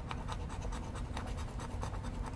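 A coin scratching the coating off a paper lottery scratch-off ticket in quick, repeated strokes.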